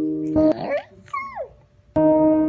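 Small white dog giving a whining howl in two parts, the second sliding down in pitch. Background music plays for the first half second, then stops.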